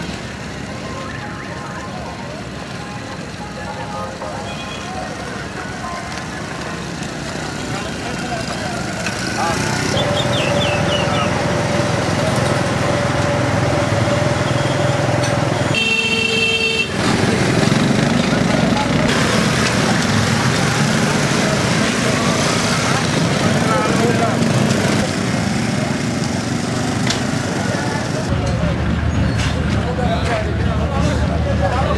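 Busy street noise: motorcycle and vehicle traffic under many people talking at once, growing louder about a third of the way in. A long steady tone sounds for about five seconds in the middle, followed by a short higher tone.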